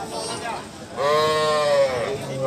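A calf bawling once, a single high-pitched call about a second long in the second half, with a slight rise and fall in pitch.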